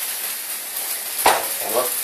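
Thin crepe batter sizzling in a hot frying pan over a gas burner, a steady hiss.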